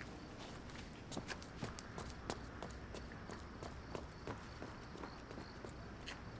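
Footsteps walking away, a few steps a second, growing fainter toward the end, over faint night insects.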